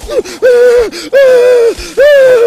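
A high-pitched voice giving loud, held cries, about three in two seconds, each on a fairly steady pitch.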